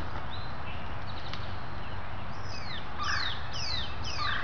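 A songbird calling: a run of about five quick falling whistles in the second half, over a steady low rumble.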